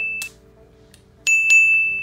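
Bright bell-like dings. The ring of one struck just before fades out early, then two quick strikes about a quarter second apart come a little past a second in and ring on as they decay.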